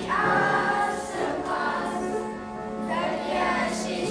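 A school choir of young voices singing together, in sustained sung phrases.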